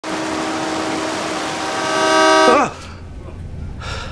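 A vehicle horn sounds steadily for about two and a half seconds, growing louder, then its pitch bends sharply down and it cuts off. A quieter low rumble follows.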